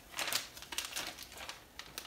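Knorr rice side packet crinkling in the hand as the last of the dry rice is shaken out of it into a pot of boiling water, with a scatter of small irregular ticks.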